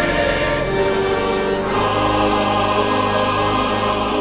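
A mixed church choir singing a hymn over sustained pipe organ chords. The harmony moves to a new chord, with a lower bass note, just under two seconds in.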